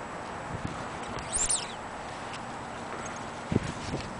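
Steady outdoor background noise, with a short high chirp about a second and a half in and two dull thumps near the end.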